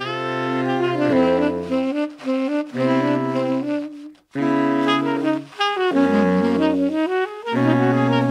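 Saxophone quartet playing a chordal passage, several saxophones moving together in harmony over a low bass line. The chord breaks off briefly about four seconds in and then resumes.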